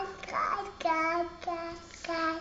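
A toddler girl's high voice in sing-song, wordless vocalising: a few drawn-out syllables, each held at a steady pitch.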